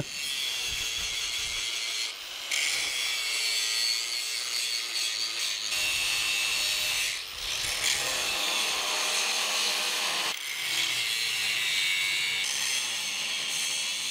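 AEG angle grinder grinding steel, the disc whining steadily against the metal. The sound drops briefly about three times.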